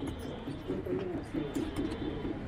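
A dove cooing in a quick, evenly repeated series of low notes, about four a second, with faint light clicks over it.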